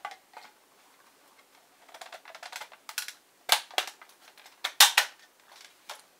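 Plastic cover of a HeathKit Smoke Sentinel 30-77L smoke detector being fitted back onto its base: light plastic clicks and knocks, with sharper clicks about three and a half and five seconds in as it goes onto the clips that hold it.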